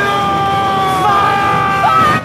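Long drawn-out battle yells, a man's and then a woman's, each held for over a second and sagging slightly in pitch, one taking over as the other fades.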